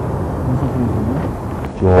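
Men talking, faint at first, then a louder spoken word near the end, over a steady low rumble of a vehicle.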